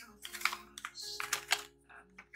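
Packaging being handled: a glossy plastic pouch crinkling and a cardboard box rustling, in a run of irregular short clicks and crackles.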